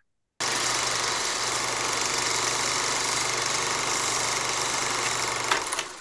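Film projector sound effect: a steady mechanical whirring clatter over a low hum. It starts about half a second in and fades out near the end.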